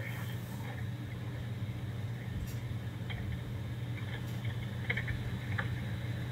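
Steady low hum and hiss of a recorded 911 telephone line, with a few faint clicks.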